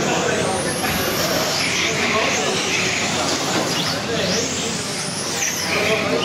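Several 1/12-scale electric RC racing cars running laps on a carpet track, their motors whining in repeated rising and falling glides as they accelerate down the straights and slow for the corners.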